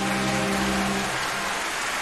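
Concert-hall audience applause breaking out as the orchestra's final held chord ends, the chord stopping about a second in while the clapping goes on.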